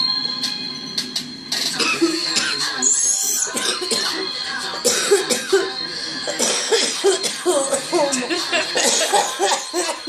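A woman coughing hard and repeatedly after inhaling a dab hit from a glass bong, the coughing starting about a second and a half in and going on in short, irregular fits.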